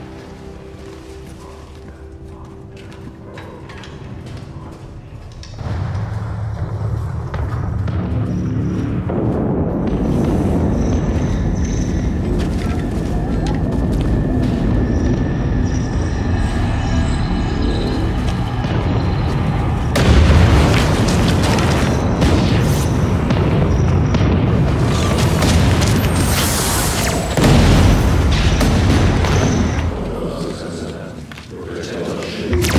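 Film soundtrack of a battle: a quiet music score at first, then from about six seconds in a loud, dense rumble of explosions mixed with music. Heavy booms hit about twenty seconds in and again near the end.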